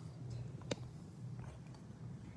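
Faint handling noise as the camera is moved and tilted down, with one sharp click under a second in and a few fainter ticks after, over a low steady hum.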